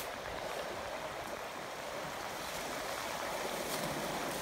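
Steady rushing of a rocky forest stream flowing.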